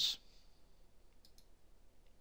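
Faint computer mouse clicks against quiet room tone: a close pair a little over a second in, and one more at the end.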